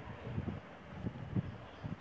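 Quiet room tone with a few faint soft knocks.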